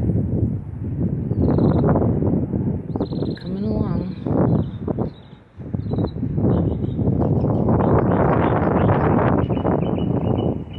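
Wind buffeting a phone's microphone in strong gusts, a loud rumbling that surges and drops, briefly easing about five seconds in. A few faint bird chirps come through.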